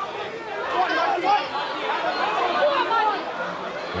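Several voices shouting and calling out at once during open play in a hurling match, heard throughout over a steady background hiss.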